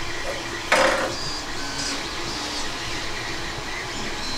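Steady room hum with one short, soft rustle about a second in.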